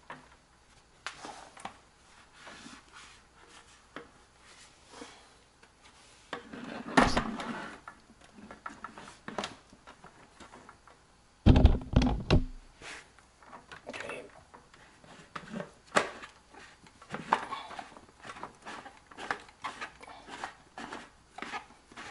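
Plastic clicks, knocks and rattles from a reverse osmosis filter unit's housings and tubing being handled and repositioned, with two louder thumps about seven and eleven seconds in.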